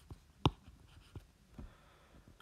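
Stylus tapping and stroking on a tablet screen while drawing a mark: a few short, light clicks, the sharpest about half a second in.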